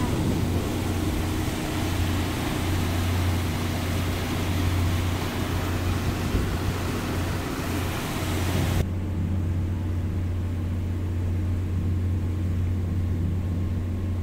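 Sightseeing cruise boat's engine droning steadily with a low hum, under a loud rushing noise of wind and churning wake water. About nine seconds in, the rushing drops away suddenly, leaving the steady engine hum.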